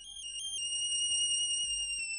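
A high-pitched synthesizer lead, in the whistling style of G-funk, enters out of silence. It plays two quick stepped notes and then holds one long, slightly wavering note that slowly slides down in pitch.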